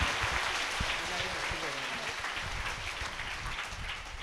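Audience applauding, the clapping fading away over the few seconds, with faint voices beneath it.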